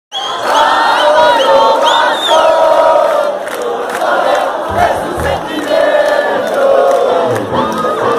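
Rock concert crowd shouting and cheering, many voices together, with a few low thumps near the middle and again near the end.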